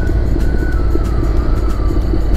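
Motorcycle riding at steady speed: a constant low rumble of engine and wind on the rider's microphone, with background music faintly underneath.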